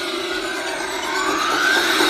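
A siren-like sweep over background music: a noisy tone glides down in pitch, then rises again near the end.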